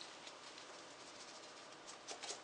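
Faint, quick ticking and pattering as ranch seasoning is shaken from a plastic shaker bottle onto raw chicken wings.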